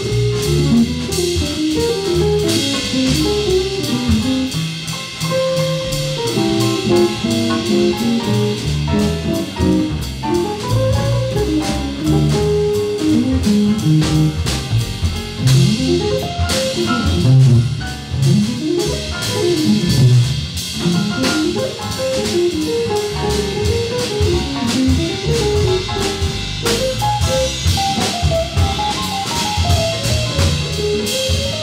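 A small jazz group playing live: a plucked double bass and drum kit with a steady ride of cymbals, with piano and electric guitar in the group. Quick, moving note lines run through the whole passage without a break.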